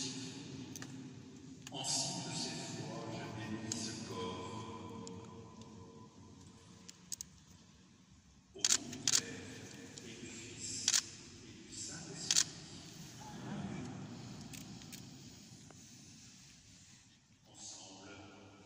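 A voice intoning a prayer, echoing in a large stone cathedral, with a few held notes. It fades after about six seconds and returns faintly later. Between about the middle and two-thirds of the way through, four or five sharp clicks cut in, louder than the voice.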